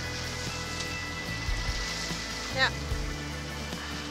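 Steady rushing wind and choppy water noise aboard a sailing yacht under way, over a constant low drone from the boat's engine.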